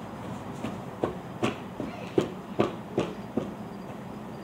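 Footsteps of someone in rubber boots walking across a lawn: about eight evenly paced footfalls, a little over two a second.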